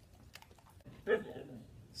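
A husky gives one short, pitched vocal note about a second in: its trained "sing" howl, prompted by a command. A few faint clicks come before it.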